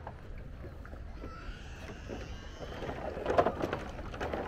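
Onewheel electric board rolling over wooden boardwalk planks: a steady low rumble with wind on the microphone and a faint high whine in the middle, then a short clatter of knocks about three and a half seconds in.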